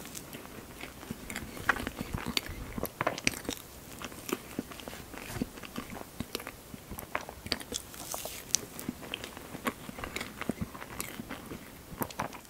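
Close-miked chewing of mouthfuls of strawberry shortcake, soft sponge and whipped cream, with many small irregular wet clicks and smacks of the mouth.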